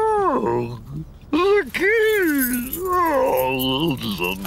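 A man's wordless vocal sounds: a falling whine, then a string of pitched hums and grumbles that rise and fall.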